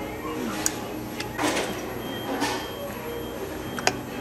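A fork scraping and clicking against a plate of food, with two short scraping swishes and a sharp click near the end, over the steady background noise of a restaurant dining room.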